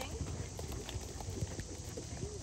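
Hoofbeats of horses trotting on a sand arena: soft, uneven thuds of hooves striking the dirt.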